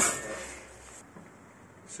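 Handling noise: a sharp knock, then a rustle that fades away within about a second, leaving only faint background.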